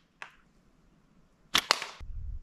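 A slingshot being fired: two sharp cracks in quick succession about one and a half seconds in, after a faint click near the start.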